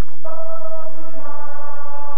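Voices singing a praise song together to nylon-string guitar. After a brief break at the start they hold one long note, and a second, higher line joins about a second in.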